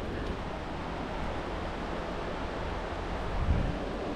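Steady wind noise rushing over a body-worn GoPro's microphone, with a single low thump about three and a half seconds in.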